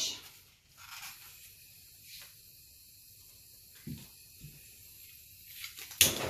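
Handheld gas torch hissing faintly and steadily after it is lit about a second in, used to bring cells up in a freshly poured acrylic paint. Two soft knocks come about four seconds in.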